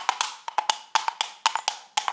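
Wood block struck in a quick, uneven percussion rhythm, each strike a dry click with a short hollow ring.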